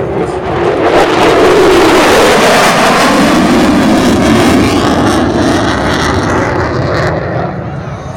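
F-16 fighter jet making a low, very loud pass: the jet roar swells within the first second, holds, then fades over the last few seconds as its pitch drops.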